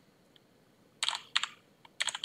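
Computer keyboard typing: a short run of keystrokes about a second in, then a single faint keystroke near the end.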